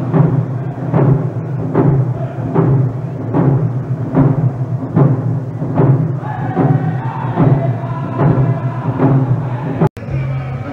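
Round dance song: hand drums struck together in a steady beat of a little more than one stroke a second, with singers' voices coming in over the drums about six seconds in. The sound cuts out abruptly just before the end.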